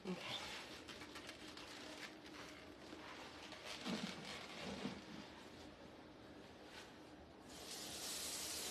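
Faint clinks and knocks of a cooking pot and utensils being handled at a kitchen counter. Near the end a steady hiss starts as water begins running into the hot fudge pot.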